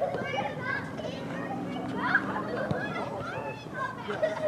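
Indistinct voices of several people talking and calling out at once, spectators and players at a high school boys' soccer match, with no words standing out clearly.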